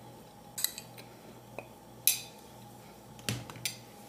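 A metal spoon clinking and scraping against a ceramic plate in about five short, separate clicks, the loudest about two seconds in.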